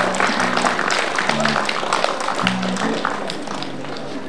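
Audience applause after a song, the clapping thinning out and growing quieter, with a few short low guitar notes underneath.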